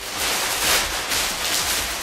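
Large clear plastic sheet crinkling and rustling in repeated surges as it is pulled down over a wetted clay sculpture to wrap it up and keep the clay moist.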